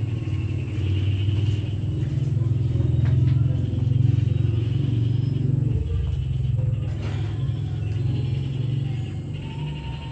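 A steady low rumble that fills the background, with a fainter steady hum above it and a few faint clicks.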